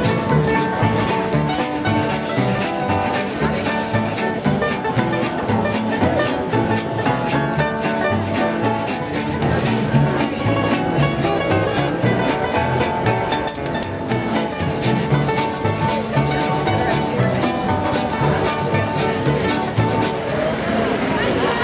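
Street string band playing an upbeat instrumental tune: resonator guitar and banjo picking over a washtub bass, driven by a fast, even scraped percussion rhythm.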